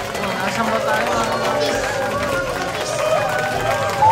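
Indistinct voices with background music playing, steady throughout.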